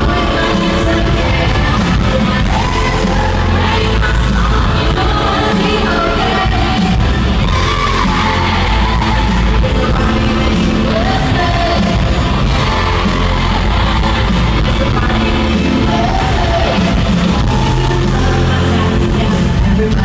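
Live pop music played loud over an arena PA, with a heavy bass beat and a lead vocal, and fans yelling along in the large hall.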